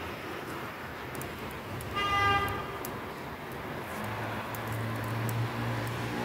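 A single short horn toot, about half a second long, about two seconds in, over steady background noise. A low steady hum comes in at about four seconds.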